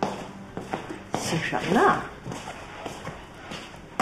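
A short vocal sound with pitch sliding up and down about a second in, over light footsteps of someone walking across a hard floor.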